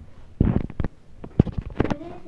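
A quick run of low thumps and sharp knocks in two clusters, about half a second in and again about a second and a half in.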